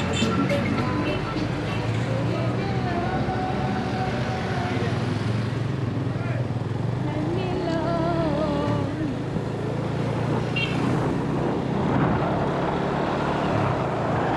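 Steady low engine hum and road noise from a small motorbike being ridden at low speed, with music and a wavering singing voice over it.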